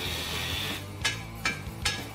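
An angle grinder cutting metal, a steady noisy whine that stops about a second in. Then come sharp metallic clicks in an even rhythm, about two and a half a second, the beat of background music.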